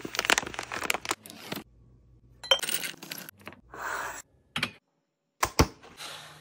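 A crinkly snack pouch being handled and torn open, in several short bursts of crackling. Two sharp clicks come near the end.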